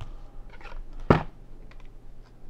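Plastic wrapper of a trading-card pack crinkling as fingers work at splitting it open, with one sharp crackle about a second in.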